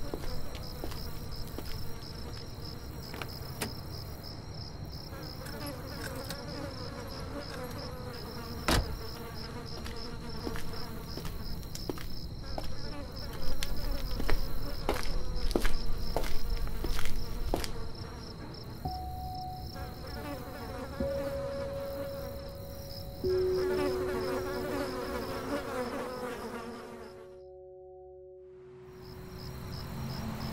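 Crickets chirping in a steady pulsing chorus, with a sharp click about nine seconds in and louder irregular noises in the middle. Later, low held tones come in one after another, and the sound drops away almost to nothing shortly before the end.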